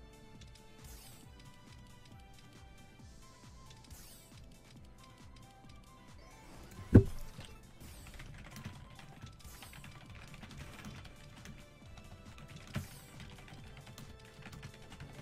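Online slot game audio: light background music with small clicks as the reels spin and stop, and a sudden loud thump about halfway through, with a smaller one near the end.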